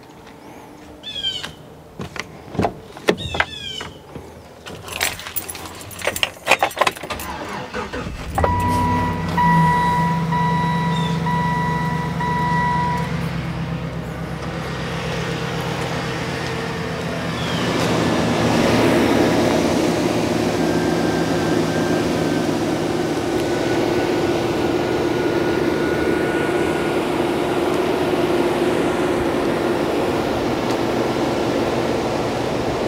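Clicks and knocks of the pickup's door and keys, then the 2011 Chevy Silverado 1500's engine starting about eight seconds in and idling steadily. A chime beeps on and off for several seconds just after the start, and a steady rushing noise joins the idle a little past halfway.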